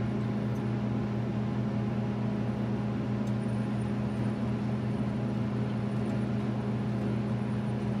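John Deere 70 Series combine engine running steadily at high idle, heard from inside the cab as an even, unchanging hum with a low drone.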